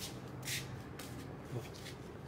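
Faint shuffling and rubbing, with a short scuff about half a second in: the footsteps and handling noise of someone walking with the camera.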